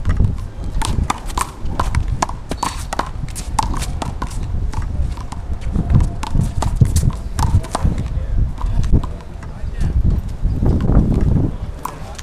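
One-wall handball rally: a rubber handball slapped by hand and smacking off a concrete wall, with sneakers scuffing and running on the concrete court. The sharp hits come irregularly throughout.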